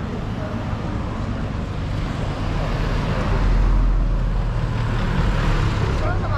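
Road traffic on a town street: a steady wash of vehicle noise, with a low rumble that grows loudest a little past the middle, as a vehicle passes close.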